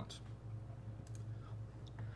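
A few faint, scattered clicks from computer input over a steady low electrical hum.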